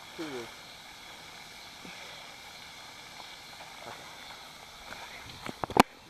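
Faint, steady outdoor hiss, broken near the end by a few sharp clicks or knocks, the last of them the loudest.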